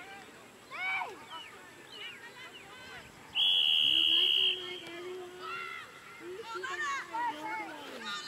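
Referee's whistle blown once, a steady shrill blast of about a second, signalling the restart kick. Players' voices call out before and after it.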